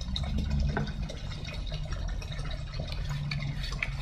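Hand trigger spray bottle spritzing liquid onto an orchid's bare roots and leaves, in faint short hisses over a low steady hum.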